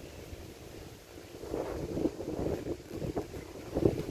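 Wind buffeting the camera microphone: an uneven low rumble that gusts louder from about a second and a half in.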